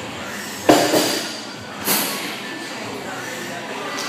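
Barbell loaded with 135 lb of plates lifted off the floor: a sharp metallic clank of the plates with a brief ring about two-thirds of a second in, a lighter knock just after, and a second, hissier clack near two seconds, over a steady background of voices.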